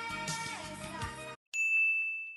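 Soft music from a telenovela clip cuts off suddenly. Then a single high, steady ding tone sounds for about a second and fades away.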